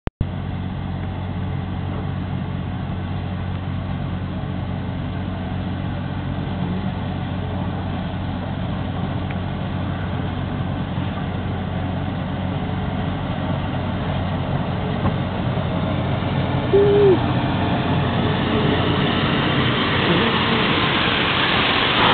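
Approaching train: a steady low hum under a rumble and hiss that grow steadily louder over the last several seconds as it nears. A single short hoot sounds a few seconds before the end.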